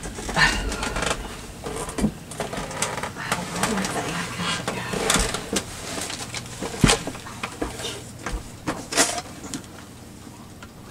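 Irregular rustling, clicks and knocks of hands handling craft supplies, starting with a cloth towel rubbed over a cutting mat; the sharpest knocks come about 7 and 9 seconds in.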